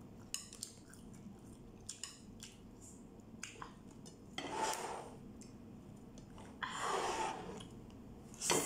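Metal chopsticks clicking against a ceramic plate a few times while stirring and lifting instant noodles, then two longer, louder slurps of noodles in the second half.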